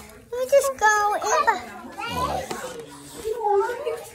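A young girl's high-pitched voice calling out without clear words, once near the start and again near the end.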